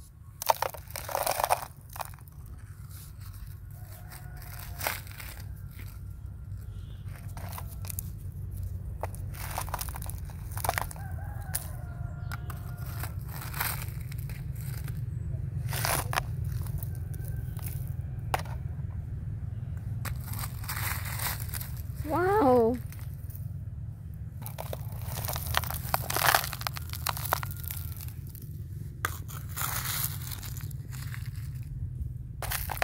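A plastic toy shovel digging into a gravel pile: repeated scrapes and crunches of small stones and dirt, some tipped into a plastic toy dump truck, over a steady low hum. About three-quarters of the way through, a short wavering call stands out as the loudest sound.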